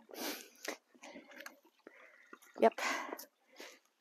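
A person's short breath through the nose right at the start, a few faint clicks, and a breathy spoken "yep" a little over halfway through.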